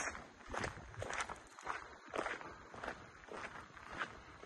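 Footsteps of a person walking along a woodland trail, a steady pace of about two steps a second.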